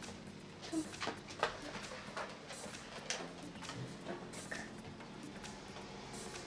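Clear plastic candy-sushi tray being handled: a handful of light plastic clicks and crackles, over steady background music.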